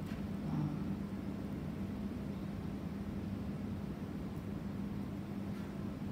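Room tone: a steady low hum under a faint, even hiss, with no speech.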